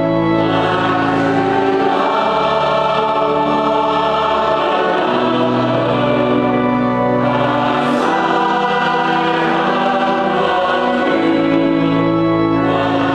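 Choir singing the Gospel Acclamation in slow, held chords that change every few seconds, accompanying the procession of the Gospel book to the ambo.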